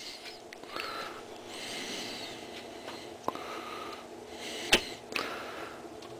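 Quiet workbench room sound with soft breathy noises and two short clicks, one a little past three seconds and a sharper one just before five seconds.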